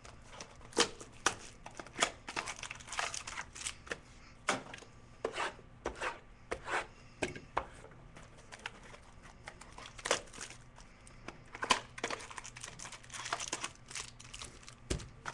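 Trading-card packaging being torn open and crinkled by hand: irregular tearing and crinkling with sharp crackles, busiest about three seconds in and again near the end.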